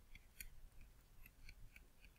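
Faint light clicks of a stylus tapping on a tablet screen while handwriting, a handful of small ticks over near silence.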